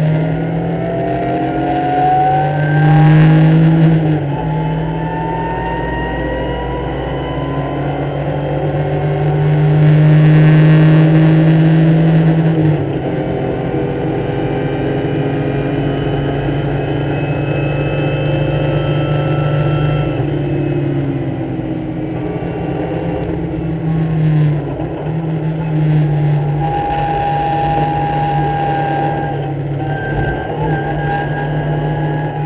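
BMW race car's engine heard from inside the cockpit, revving hard through the gears with upshifts about 4 and 12 seconds in, then running at high revs down a straight. It drops in pitch as the car brakes for a corner around 21 seconds, then pulls up again.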